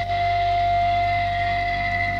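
Live progressive rock band music: a sustained chord of held notes over a steady low drone, with no drumming.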